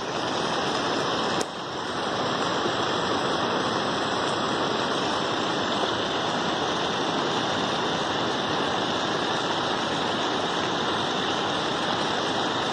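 Steady rushing noise of water, with a short dip and a click about a second and a half in.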